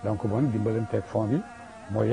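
An elderly man speaking in a low, somewhat buzzy voice, with a short pause near the end.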